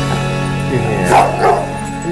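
A yellow Labrador barking a few times about a second in, over background music with steady held notes.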